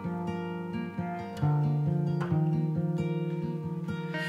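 Instrumental passage of a song: acoustic guitar playing chords, with a louder chord coming in about one and a half seconds in.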